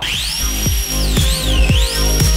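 Hand-mounted electric ducted fan (EDF) jets spooling up with a high whine that rises, holds, then dips and climbs again. Electronic music with a heavy kick drum plays underneath.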